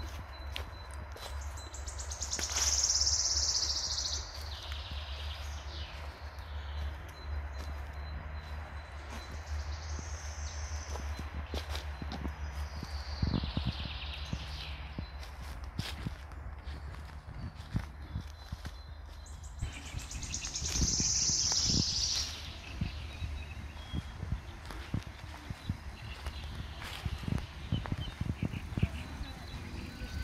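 Exhibition-hall background noise: a steady low hum with scattered footsteps and knocks. A loud hiss comes twice, about two seconds in and again about twenty seconds in.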